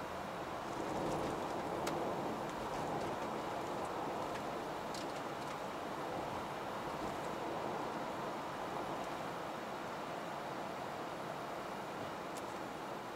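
Steady in-cabin road and tyre noise of a second-generation Toyota Vellfire cruising at a steady pace, swelling slightly a second or two in, with a few faint clicks.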